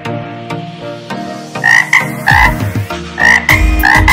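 A frog croaking: a run of short, loud calls in quick succession, starting about two seconds in as light background music dies away.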